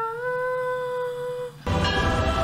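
Film soundtrack music: the full score breaks off to a single held note, which scoops up slightly as it begins and holds steady for about a second and a half. The full music then comes back in near the end.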